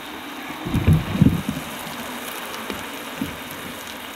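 Spam slices and baked beans sizzling in a pan on a portable gas burner, a steady hiss, the boiling water in the pan having boiled away. A few low bumps come about a second in.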